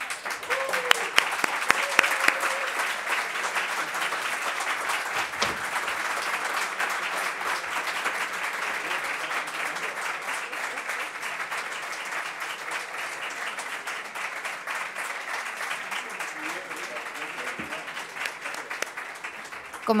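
Audience applauding in one long, steady round that eases off a little near the end, with a few faint voices underneath.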